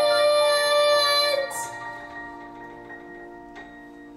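A girl singing a long held final note with piano accompaniment; her voice cuts off about a second and a half in, and the piano's last chord rings on and slowly fades as the song ends.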